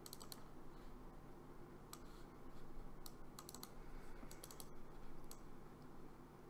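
Faint computer keyboard clicking and tapping in scattered short clusters, over a low steady hum.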